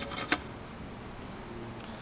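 Two short clicks right at the start, the second about a third of a second in, then a steady low hum of background noise.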